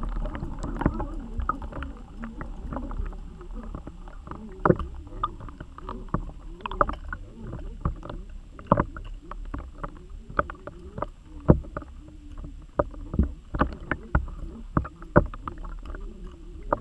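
Underwater sound from a submerged camera rig being moved through the water: a low rumble of moving water, with irregular sharp clicks and knocks throughout and a few louder knocks spaced several seconds apart.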